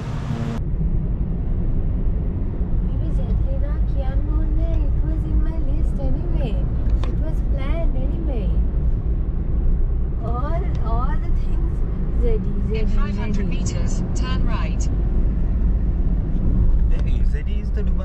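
Steady low rumble of a car's engine and road noise inside the cabin while driving.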